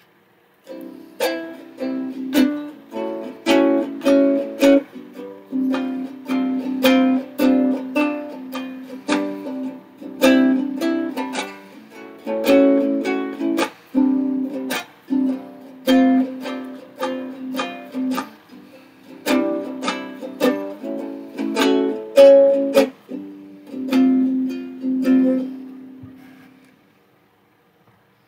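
Chords strummed on an acoustic string instrument in a steady rhythm, with short breaks between phrases, stopping about a second and a half before the end.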